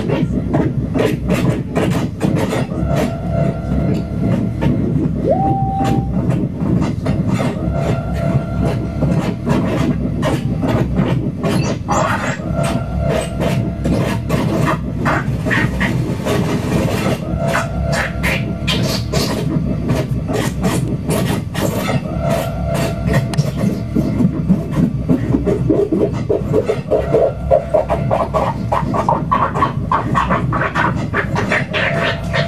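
Live electronic music from a reacTable tabletop modular synthesizer: a dense stream of rapid clicks over a thick low rumbling texture and steady held tones, with a short upward pitch glide about five seconds in. The clicking grows louder and more agitated near the end.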